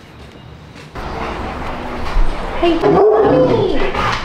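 A bull terrier whining in one long, drawn-out moan that rises and falls, starting about two and a half seconds in.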